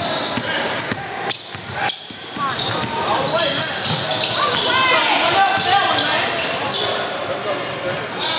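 Basketball game on an indoor hardwood court: a ball bouncing on the floor amid the shouts and chatter of players and spectators, echoing in the large gym.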